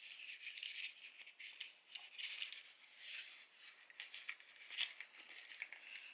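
Faint, irregular crinkling and clicking of plastic packaging as a five-piece makeup eye brush set is handled and opened.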